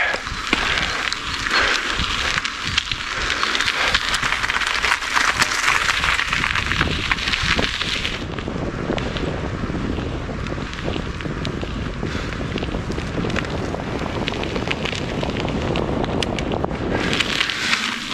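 Wind rushing over the microphone of a bicycle riding fast along a paved road, with a steady low rumble from the ride. The hiss is strongest in the first half and eases about eight seconds in.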